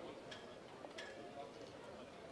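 Faint, indistinct crowd chatter with two sharp clicks of high-heeled footsteps on cobblestones, about a third of a second and a second in.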